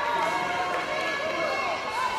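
Several raised voices shouting and calling out at once, overlapping.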